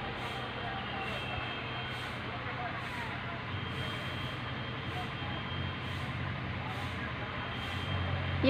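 Steady background hum and hiss with no distinct event, and a faint high whine that drops out for a moment about two seconds in and returns.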